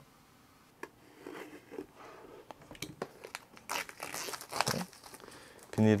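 Clear plastic film being peeled by hand off a cardboard product box, crinkling and crackling irregularly after a quiet first second.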